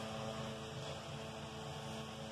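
Quiet room tone: a steady low hum with a faint hiss, and no distinct event.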